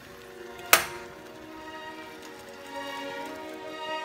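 Soft background music with sustained notes. About a second in, a single sharp click from an electric range's control knob being turned off.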